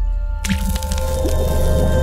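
Logo sting sound effect for an ink-splat logo reveal. A deep rumble swells, then about half a second in comes a sudden wet splat over a heavy bass hit, with held musical tones ringing on.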